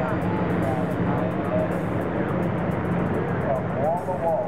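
Steady loud rushing roar of a hot-air balloon's propane burner firing, with people's voices faintly over it.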